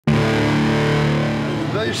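A heavily distorted electric bass chord struck once and left ringing, several notes held together and slowly fading. A man's voice begins right at the end.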